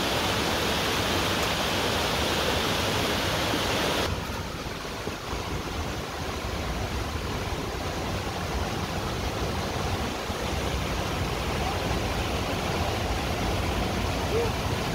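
Water rushing over the small cascades of a forest stream, a steady noise that turns duller and a little quieter about four seconds in.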